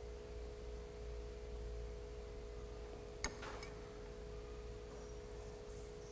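Quiet, steady hum of a few held tones over a low rumble. About three seconds in comes a single light clink, a metal spoon against the glass bowl.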